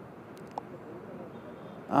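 A pause in speech filled with faint background noise, with a soft click about half a second in.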